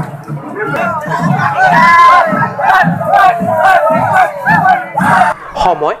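A large crowd shouting together, many raised voices overlapping, loudest about two seconds in and dropping off shortly before the end.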